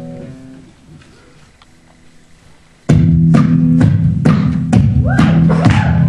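Fingerstyle acoustic guitar: a chord rings out and fades into a pause. About three seconds in, the playing comes back loud with a blues groove of low bass notes and sharp percussive strikes on the guitar, about two a second.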